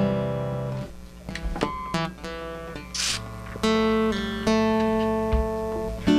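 Acoustic guitar with a few notes plucked and left ringing, a new note or chord sounding every second or so. A short hiss about halfway through.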